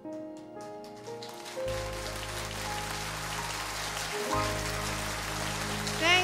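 Closing piano notes ring out as audience applause rises and holds at a steady level, over steady low held notes from the band.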